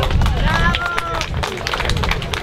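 Crowd applauding with dense, fast handclaps, a voice calling out briefly about half a second in, over a low rumble of wind on the microphone.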